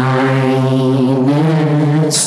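A man's voice holding a long, low droning vocal tone that steps up in pitch about halfway through, as part of an improvised vocal performance.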